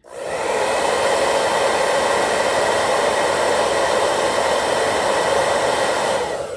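Handheld hair dryer blowing hot air, switched on at the start and running steadily.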